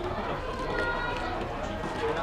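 Indistinct chatter of several voices in a busy fast-food restaurant dining area, with a brief faint tone about a second in.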